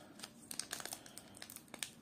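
Foil wrapper of a Pokémon TCG booster pack crinkling as it is torn open by hand: faint, scattered crackles.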